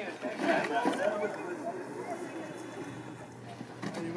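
Indistinct chatter of a group of people talking among themselves, loudest in the first second or so.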